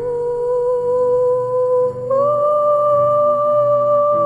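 Wordless female voice humming long held notes over a low, steady drone: one sustained note, then a step up to a higher sustained note about two seconds in.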